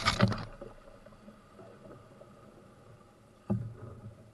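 Paddle strokes from a small paddled boat on a creek: a loud splash and knock at the start, and a smaller one near the end.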